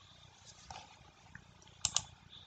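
Quiet room tone with faint small noises, and a brief sharp double click near the end.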